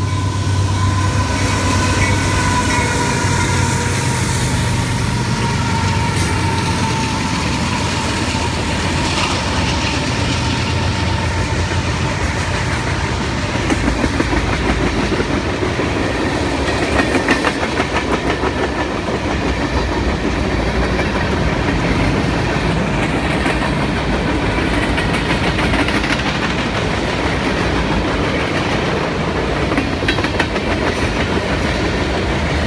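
A CSX diesel freight train passing close by. The locomotives' engine drone and a faint held tone die away over the first several seconds, then the freight cars rumble and clatter past steadily, wheels clicking rhythmically over the rail joints.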